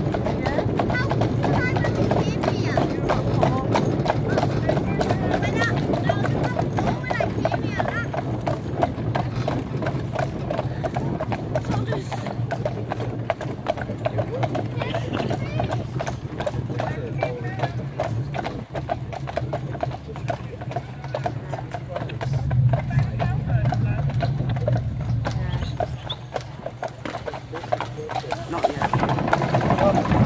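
Hooves of a pair of harnessed horses clip-clopping at a steady walk as they pull a cart, over paved road and then cobblestones.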